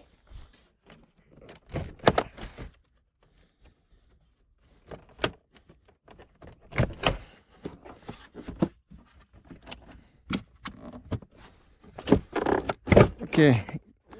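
Irregular clicks and knocks of a Porsche Panamera's plastic front door panel and its clips being worked loose by hand.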